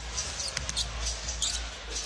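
Basketball arena sound during live play: a basketball being dribbled and sneakers squeaking on the hardwood court, with short sharp squeaks over a steady crowd murmur.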